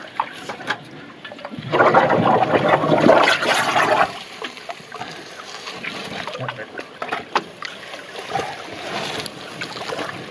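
Water sloshing and splashing as a diver in full kit crawls through a shallow pool, with a louder rush of moving water from about two to four seconds in, then softer scattered splashes and drips.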